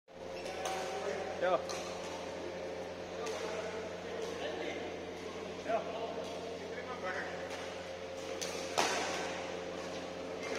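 Badminton rackets striking shuttlecocks on nearby courts: sharp cracks about every second, the loudest near the end, echoing in a large hall over a steady hum.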